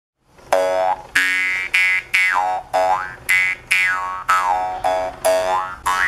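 Indonesian jaw harp twanged about twice a second, starting about half a second in. Each twang is a buzzing drone whose strong overtone glides up and down as the player reshapes the inside of his mouth.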